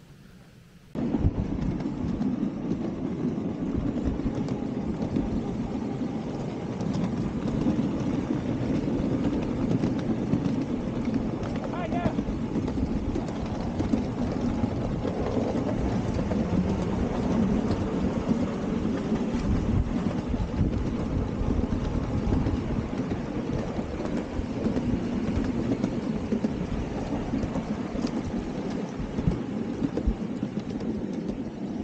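Ride-on miniature railway train running along the track: a steady rumble of wheels on rail with a constant rattle of small clicks from the carriage, starting abruptly about a second in.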